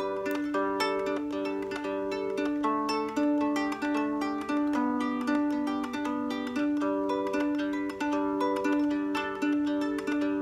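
Three-string Hobo Fiddle cigar box guitar, tuned root-five-root, plucked in a simple looping riff of single notes and double stops, repeated over and over at a steady tempo.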